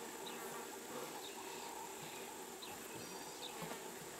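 Flies buzzing steadily around a buffalo carcass, with a few short high chirps now and then.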